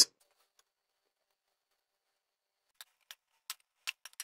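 Near silence, then four or five faint, short clicks in the last second and a half as cooked vermicelli is tipped from a metal colander onto a plate.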